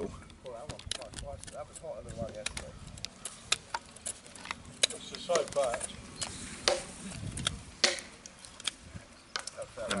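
Small knife whittling the tip of a willow bow-drill spindle: a string of irregular sharp clicks as thumb cuts bite into the wood and break off chips, shaping the end to a point like a drill bit.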